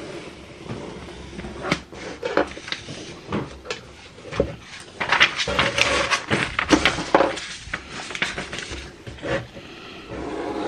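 Irregular knocks, clicks and rubbing from someone handling things right beside the microphone, with a busier, louder stretch of scraping and clatter about halfway through.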